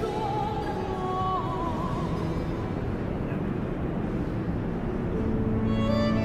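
A female voice in baroque opera holds a high note ending in a trill about two seconds in, over a string ensemble. The strings then play on alone, with lower notes from the cellos and double bass coming up near the end.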